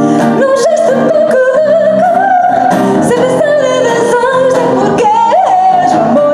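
A woman singing a melody into a microphone, accompanied by a strummed acoustic guitar; her voice comes in about half a second in, over the guitar that is already playing.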